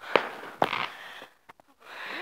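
Fireworks going off: two sharp bangs about half a second apart, each followed by a hiss. A few fainter pops come about a second and a half in.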